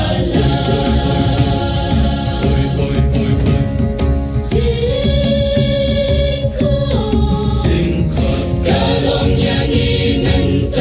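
A choir singing in sustained, chant-like phrases, with one long held note in the middle, over a steady beat.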